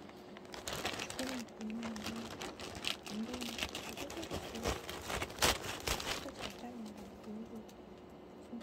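Plastic shipping mailer bag crinkling and rustling in irregular bursts as it is handled and opened, with a sharper crackle about five and a half seconds in, then dying down.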